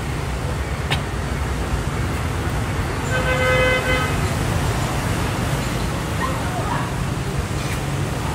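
Steady street traffic rumble, with a vehicle horn giving one steady honk of about a second roughly three seconds in. A single sharp click comes about a second in.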